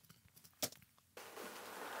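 Near silence with a single sharp click about half a second in, then a faint rising hiss as playback of the processed, reverb-laden whispered backing vocals begins.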